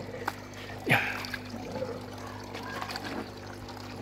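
Fish-pond water pouring steadily from a pipe outlet into a gravel-filled filter bed of an aquaponics system, over a steady low hum.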